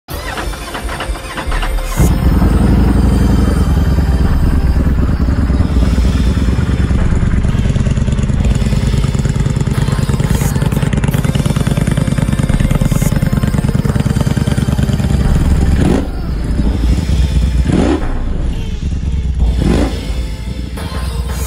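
Ducati Panigale V4 R's V4 motorcycle engine starting about two seconds in and idling steadily, then three quick throttle blips near the end.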